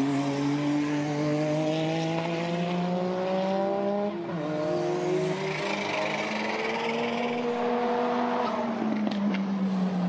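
Engines of Suzuki Cappuccino time-attack race cars accelerating hard past on track. The engine note climbs steadily, drops at a gear change about four seconds in, climbs again, then falls away near the end.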